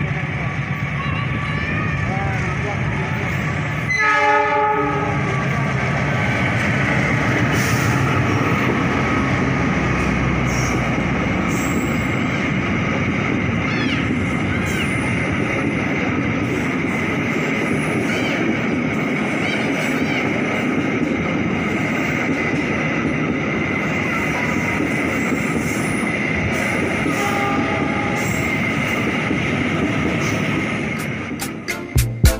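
Argo Parahyangan passenger train behind a diesel locomotive sounds one horn blast about four seconds in. The locomotive and carriages then roll past slowly with a steady rumble and wheel clatter. The train is held to a slow speed over newly laid points and sleepers.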